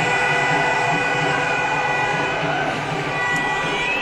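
Cricket stadium ambience from high in the stands: a steady crowd wash with several high, droning tones held through it.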